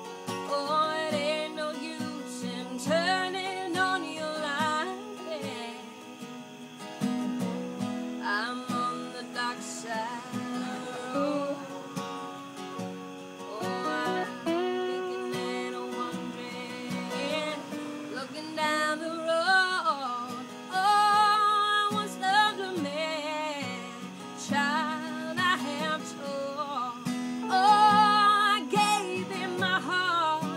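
Slide guitar playing an instrumental break of gliding, wavering notes over strummed acoustic guitar chords.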